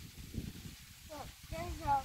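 A child's voice making short wordless sounds: a brief falling sound about a second in, then longer drawn-out sounds near the end, over a faint low rumble.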